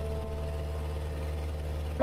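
River boat's engine running steadily, a low, even drone.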